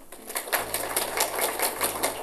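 Audience applauding: a roomful of people clapping in quick, uneven claps that start a moment in.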